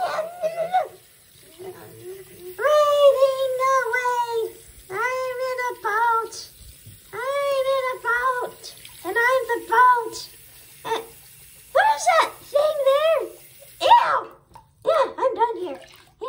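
A high-pitched voice making drawn-out, bending vocal sounds, with no clear words, over the steady hiss of tap water running into a sink full of soapy water; the water stops about two seconds before the end.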